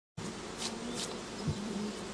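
Honey bees buzzing: a steady hum with individual bees' drones wavering in pitch, and a brief low thump about three-quarters of the way through.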